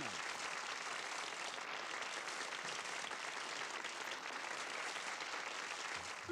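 Audience applauding steadily after a song.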